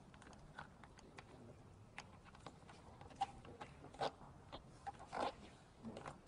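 Faint handling sounds of EPDM rubber membrane being pressed and smoothed by hand around the base of a pipe: scattered light taps and brief rustles, the clearest about two, four and five seconds in.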